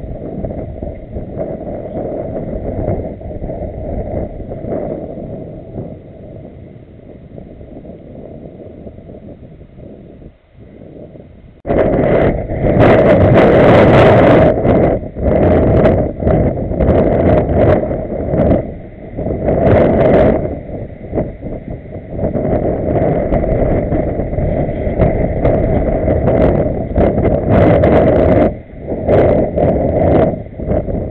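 Wind buffeting the camera microphone, an irregular low rumble that jumps abruptly louder about 12 s in and stays loud in gusts with short lulls.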